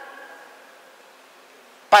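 A short pause in a man's speech, picked up through a desk microphone in a large chamber. The last word's echo rings on and fades over about a second, leaving a low, steady hiss, and his voice comes back in near the end.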